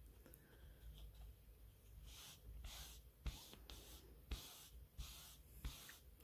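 Faint brushing of a damp velvet scrap rubbed back and forth over velvet pile, a run of soft strokes about every half second from about two seconds in.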